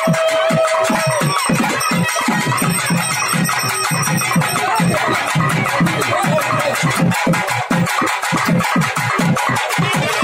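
Loud music with fast, steady drum strokes throughout, and a held high note that stops about a second in.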